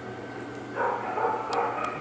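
A dog vocalizing with a pitched whine-like call in two stretches, starting about three-quarters of a second in, with two sharp clicks near the end.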